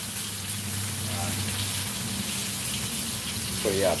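Floured catfish pieces frying in oil in a pan, a steady sizzle.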